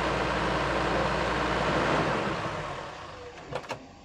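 Toyota Land Cruiser SUV running as it rolls up and comes to a stop, its sound fading away over the last two seconds. Two sharp clicks near the end.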